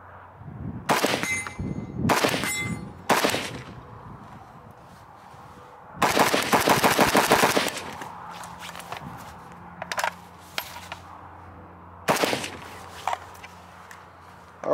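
Zastava M90 rifle firing .223 from a steel WASR-3 magazine: three shots about a second apart, then a fast string of shots lasting about a second and a half, and one more shot near the end. The action cycles normally with this magazine.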